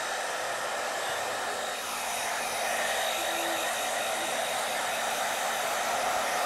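Handheld grooming blow dryer running steadily, blowing air over a long-haired cat's coat, a little louder from about two seconds in.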